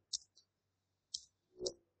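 Faint computer mouse clicks, two sharp ones about a second apart, as a settings dialog is confirmed. A brief softer sound follows near the end.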